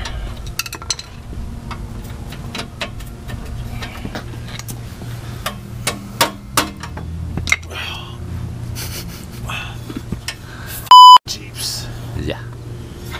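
Scattered sharp metal clicks and knocks from hand tools working under a lifted Jeep Cherokee, over a faint low hum. Near the end comes a loud half-second electronic bleep, a steady 1 kHz tone of the kind dubbed in to censor a word.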